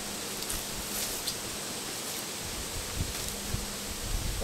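Steady outdoor hiss with a faint steady hum, a few light taps, and a couple of dull low thumps about three seconds in as a wooden beehive is handled.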